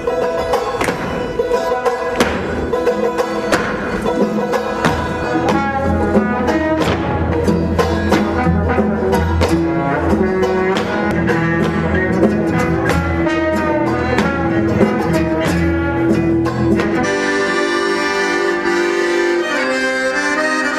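Live folk band playing an instrumental passage: quick plucked banjo notes over a steady bass line. About three seconds before the end the bass and plucking drop away, leaving held accordion chords.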